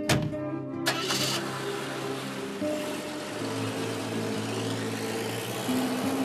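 A car door shuts with a sharp click, and about a second in the taxi's engine starts with a short burst of noise, then runs steadily under background music.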